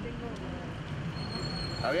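Steady background city traffic noise, a low rumble of vehicles, through a pause in talk; a man's voice starts again near the end.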